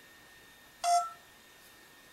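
A mobile phone's keypad giving one short touch-tone beep as a number is dialled, about a second in.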